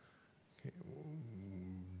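A man's voice over a microphone: a short "okay" about half a second in, then a long, steady hesitation hum ("mmm") held until he starts his next sentence.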